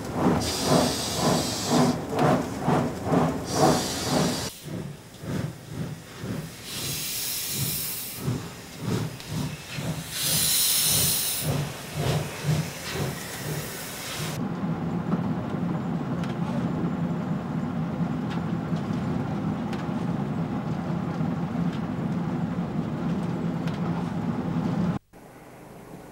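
Class 01.10 steam locomotive working under steam, its exhaust beating about twice a second, with loud bursts of steam hiss. In the second half a steadier, duller running sound takes over.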